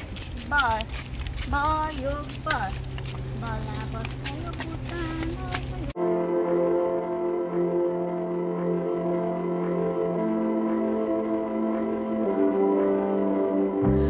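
High-pitched children's voices chattering for about six seconds, then a sudden cut to background music of slow, sustained held chords that shift about ten seconds in.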